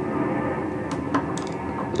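A few light metal clicks as a small metal laser diode module is set into the jaw of a small steel adjustable wrench, over a steady background hum.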